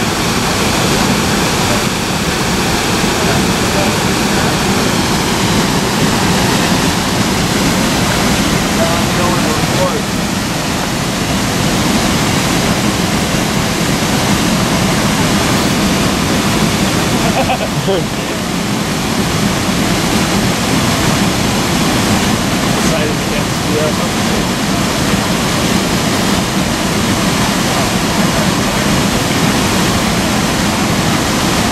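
Abrams Falls, a large waterfall pouring into its plunge pool, heard close by as a loud, steady, unbroken rush of falling water.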